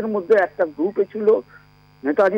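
A caller's voice over a telephone line, talking for about a second and a half and then pausing, with a steady electrical hum on the line that is left on its own in the pause.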